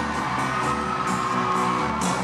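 Live band music at a country concert, heard from within the audience as a steady instrumental passage.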